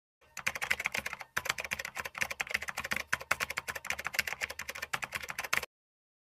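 Keyboard typing sound effect: a fast, dense run of key clicks with a short break about a second in, cutting off suddenly near the end.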